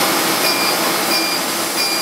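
Laser hair-removal machine beeping once per pulse, three short high beeps about two-thirds of a second apart, over a loud steady rush of air.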